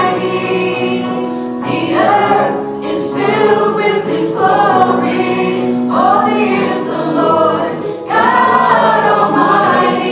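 A church worship team singing a praise song, several voices together in long phrases over keyboard accompaniment with held notes.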